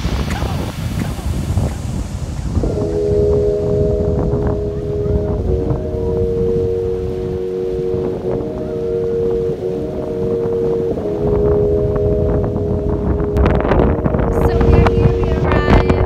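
Strong wind buffeting the microphone, with surf on the shore. From about three seconds in, a steady chord of low sustained tones holds through the wind and shifts pitch twice.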